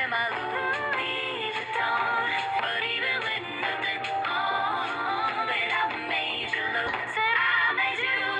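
Pop song playing, with sung vocals over a steady backing track throughout.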